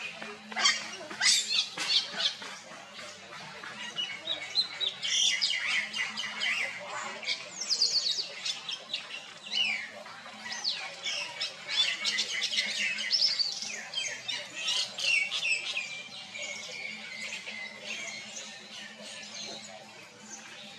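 Baby macaque crying: a rapid series of short, high-pitched squeals, each falling in pitch. The calls thin out in the last few seconds.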